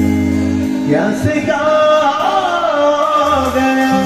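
Live band music: held low keyboard notes give way, just before a second in, to a lead melody line with gliding, wavering pitch over sustained chords.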